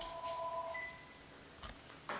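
Phone ringing: a chime-like ringtone of steady electronic tones that stops about a second in.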